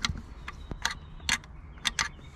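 Sharp metallic clicks of hand tools at work, roughly two a second, as the bolts holding the steering wheel's metal hub piece are loosened and taken out.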